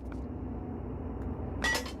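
Cartoon sound effect of a metal hook catching and lifting a manhole cover: one sharp metallic clink with a short ringing tone near the end, over a steady street-ambience hiss.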